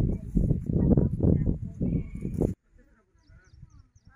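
A person talking, cut off abruptly about two and a half seconds in, after which only faint sounds remain.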